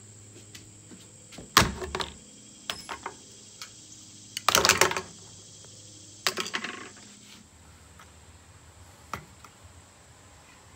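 Hand tools, a hot glue gun and a utility knife, being set down and handled on a wooden butcher-block tabletop: four short clusters of knocks and clatters, the longest a half-second rattle near the middle, then a single click near the end.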